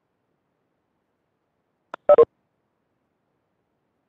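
A quick pair of short electronic beeps about two seconds in, just after a faint blip, in otherwise silent conference-call audio.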